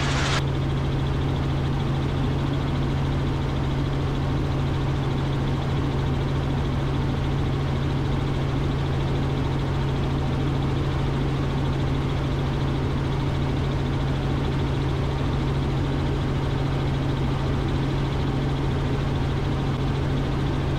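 Robinson R44 helicopter in flight heard inside its cockpit: the steady drone of its engine and rotors, a constant low hum over an even rushing noise.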